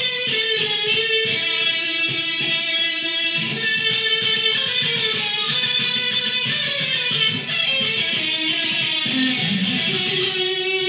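Jackson electric guitar playing a waltz melody, a continuous run of picked notes.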